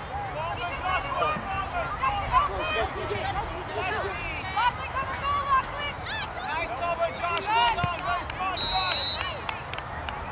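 Sideline spectators at a youth soccer game calling out and cheering, with many voices overlapping. A short, high whistle blast comes near the end.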